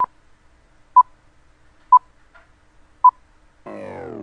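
Film-leader countdown beeps: four short, high, single-pitched beeps about a second apart. Near the end a falling synthesized tone sweep begins, leading into the intro.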